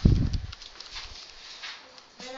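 A loud, dull low thump at the start that dies away within about half a second, followed by faint light clicks and rustling.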